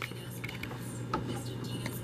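Indoor room tone: a steady low hum with a few faint, brief clicks.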